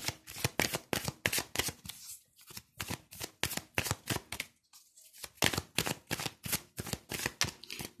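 A tarot deck being shuffled by hand: rapid rows of crisp card flicks, broken by two short pauses, about two seconds in and again near five seconds.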